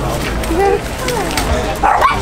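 A dog giving several short, high calls that slide up and down in pitch, over the chatter of a crowd.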